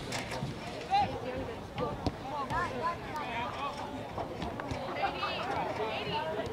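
Voices calling and shouting across a soccer field during play, several at once with none clearly worded, and two sharp knocks about one and two seconds in.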